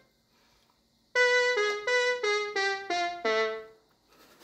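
Yamaha PortaSound mini electronic keyboard played one note at a time: a short melody of about seven notes starting about a second in, the last note held a little longer.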